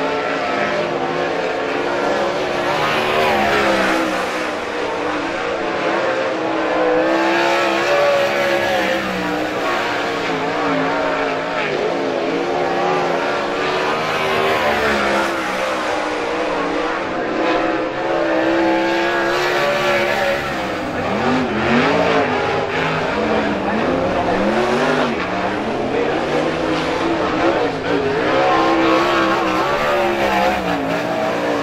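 Several sprint car V8 engines running on a dirt track, their pitch rising and falling as they rev through the laps, with more than one engine often heard at once.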